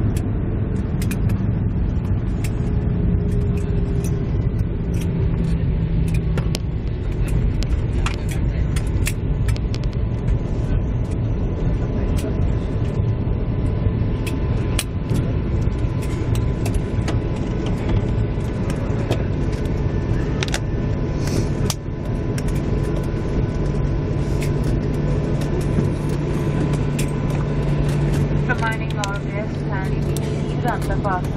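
Cabin noise of a jet airliner rolling along the runway just after landing: a steady rumble of wheels and engines with a low hum, broken by scattered clicks and rattles from the cabin. A voice comes in near the end.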